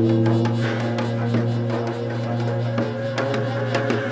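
Korean traditional orchestra playing a geomungo concerto: a sustained low drone with held notes above it and a run of sharp attacks, swelling louder with a new chord right at the start.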